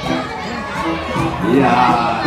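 Audience shouting and calling out, many voices overlapping at once, growing louder about one and a half seconds in.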